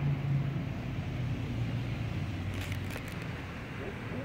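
A steady low engine hum over outdoor background noise, easing off slightly, with a few faint clicks about two and a half to three seconds in.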